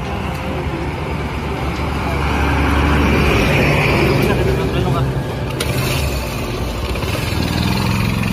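A truck passing on the road, swelling to a peak about three to four seconds in and then fading, over a steady low engine hum.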